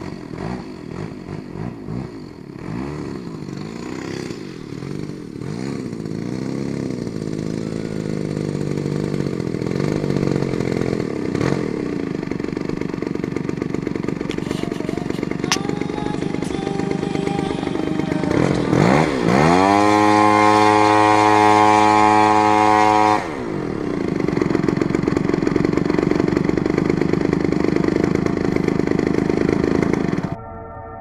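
RCGF 55cc two-stroke petrol engine of a 30% scale P-51 Mustang model plane running at low speed as it taxis on grass, its pitch wavering. About two-thirds of the way in it revs up sharply to a steady higher speed for about four seconds, then drops back abruptly to a low run.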